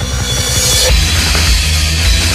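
Black/death metal music with drums. A little under a second in, a thinner passage gives way to the louder, denser full band.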